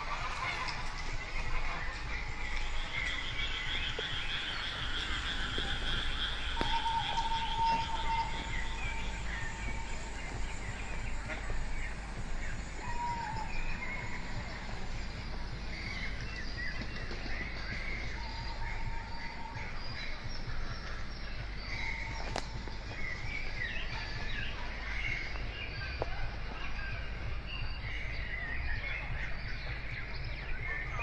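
Recorded woodland animal sounds played over a light trail's speakers: frog croaks and many short bird chirps and calls, with a few held whistling notes. A steady low rumble runs underneath.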